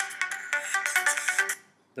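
Short, bright electronic music jingle from a course video's logo intro, a quick run of melodic notes. It stops abruptly about one and a half seconds in as the video is paused.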